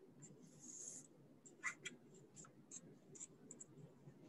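Near silence with faint handling noises: soft rustling and a few light clicks as yarn is looped and tied around a pom-pom maker.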